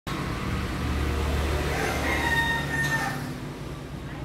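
Rooster crowing once, a single drawn-out call that ends about three seconds in.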